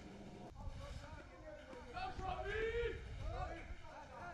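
Faint voices talking or calling out in the background, over a low outdoor rumble.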